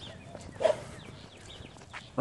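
Footsteps of canvas Chuck Taylor sneakers walking on asphalt, with one short voiced sound about two-thirds of a second in.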